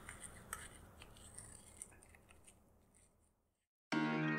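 Faint scraping and light clicks of a metal spoon in a small cup of baking soda, a few ticks in the first two seconds, then silence. Background music begins just at the end.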